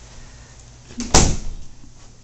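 A single door thump about a second in, preceded by a small click, like an interior door bumping or shutting.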